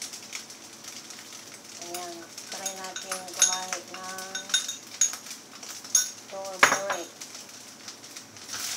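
A metal spoon clinking against a small ceramic bowl and the pan rim as seasoning is tipped into frying rice, with a run of sharp clinks in the second half. Frying rice sizzles faintly underneath.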